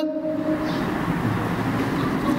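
A man's drawn-out vowel trails off about half a second in, giving way to a steady rushing noise with a faint low hum.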